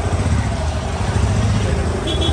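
Motorcycle engine running at low speed, a steady low rumble.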